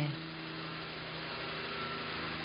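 Steady background hiss with a faint, even hum underneath.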